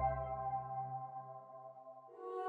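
Jingle music from a logo card: a sustained chord of steady electronic tones over a deep bass note, fading out to near silence.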